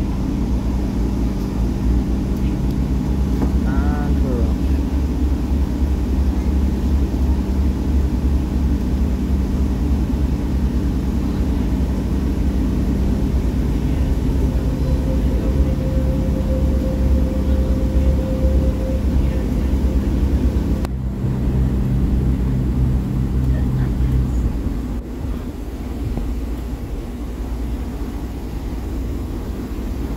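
Underfloor diesel engine of a British Rail Class 144 Pacer railbus, heard as a steady low rumble inside the carriage. About two-thirds of the way through, the engine note changes as the unit pulls away from the platform. A faint steady tone is heard for a few seconds in the middle.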